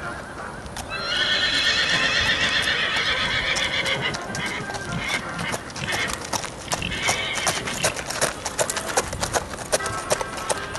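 A horse whinnies for a few seconds, starting about a second in, with a shorter call later. Then come quick, sharp hoofbeats of a horse trotting on a packed gravel path.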